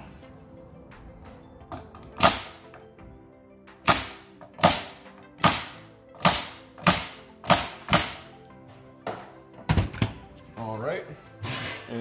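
Nail gun firing about nine single shots, one every half second to a second, driving nails through a wooden cleat into the pine boards beneath it.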